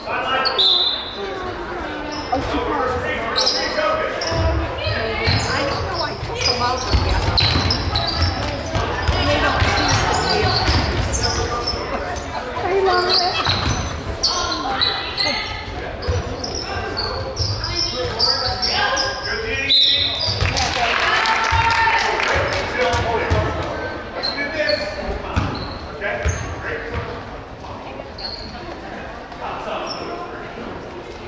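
A basketball dribbled on a hardwood gym floor, bouncing repeatedly for several seconds from about four seconds in, amid players' and spectators' voices echoing in a large gym.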